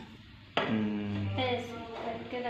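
A person's voice held in one drawn-out sound without words, starting about half a second in and lasting a little over a second.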